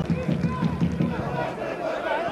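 Live football stadium ambience from a sparsely attended ground: a steady murmur of spectators' and players' voices, with a few shouts.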